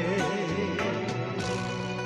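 Karaoke backing music playing steadily, with a man's singing voice over it.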